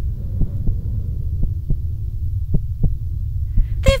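A low rumbling drone with soft double beats repeating about once a second, like a heartbeat, used as sound design on the cartoon's soundtrack.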